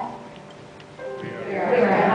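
A group of voices singing, with held notes. The singing drops to a lull in the first second and picks up again about a second in.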